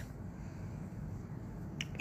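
Quiet room tone with a low steady hum, and a couple of short sharp clicks shortly before the end.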